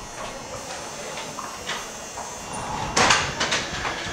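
A few quick hissing bursts from a shining-spray can, about three seconds in, as more coat-shine spray is put on a horse's mane. Before them there is only faint rustling of hands working through the mane.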